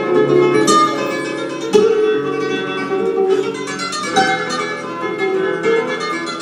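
Solo flamenco guitar, nylon strings, playing picked melodic runs. Sharp, accented chords strike about two seconds in and again just past four seconds.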